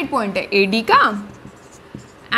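Marker pen writing on a whiteboard, heard mostly in the quieter second half, after a woman's voice speaks for about the first second.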